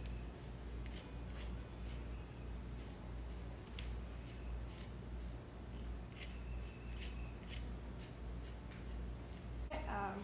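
Uncapping scraper scratching wax cappings off a honeycomb frame in many short, irregular scrapes.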